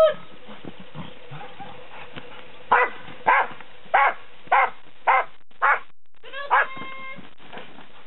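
A dog barking in a regular run of six sharp barks about half a second apart, starting about three seconds in. These are bark-and-hold barks at a decoy in a bite suit during ring-sport protection work.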